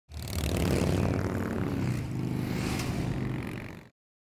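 Loud motorcycle engine noise, a dense low rumble that fades out just before four seconds.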